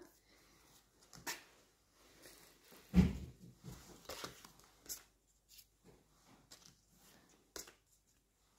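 Pokemon trading cards being handled and flipped over, giving faint, scattered flicks and rustles of card stock, with a short spoken "okay" about three seconds in.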